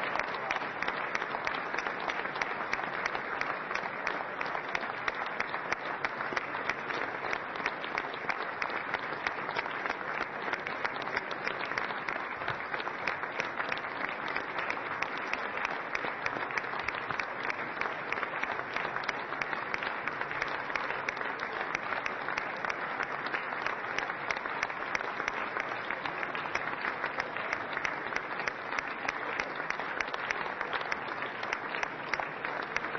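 A large audience applauding, dense continuous clapping that holds steady throughout.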